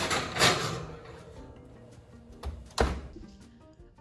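Glass baking dish pushed onto a metal oven rack with a clatter, then a wall-oven door shut with a thunk about three seconds in, over quiet background music.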